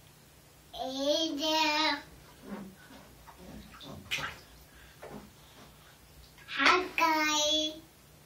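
A toddler's voice in two long sung stretches, about a second in and again near the end, with faint splashing of bathwater between them.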